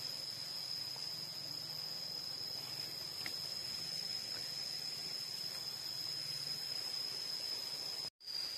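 Steady high-pitched drone of insects, a single continuous tone that holds unchanged throughout, over faint outdoor background noise.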